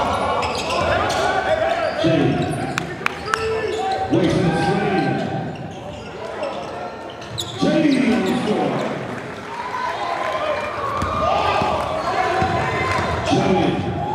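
Basketball dribbled on a gym's hardwood court during live play, with indistinct shouting from players and spectators echoing in the large hall.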